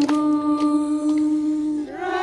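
A group of children and young people singing an anthem unaccompanied, holding one long note that breaks off near the end.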